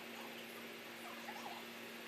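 Quiet room tone: a steady low hum with a few faint, brief squeaky chirps.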